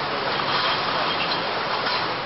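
Steady rushing outdoor background noise from the raw footage's sound track, even and without distinct events.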